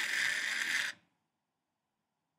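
Original Furby toy's internal motor and gears whirring for about a second as its eyes close and ears fold down, then cutting off suddenly: the Furby going to sleep.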